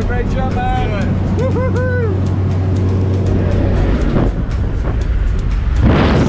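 Steady drone of a small jump plane's engine heard inside the cabin, with voices over it in the first couple of seconds. From about four seconds in, a rush of wind grows and swells loudly near the end as the door is opened for the jump.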